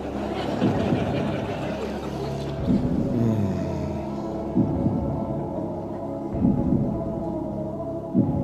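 Suspenseful game-show background music: a sustained synthesizer drone with low, swelling pulses every couple of seconds.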